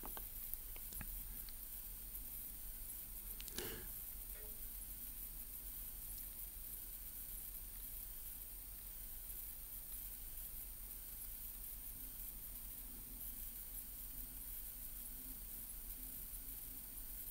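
Quiet room tone with a few faint clicks and taps from fingers working a Samsung Gear S3 Frontier smartwatch's rotating bezel and touchscreen; one slightly louder soft knock comes about three and a half seconds in.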